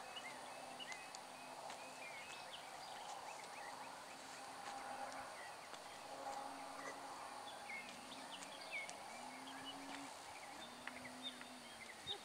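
Outdoor ambience of small birds chirping and singing over and over, with a faint low hum that comes and goes.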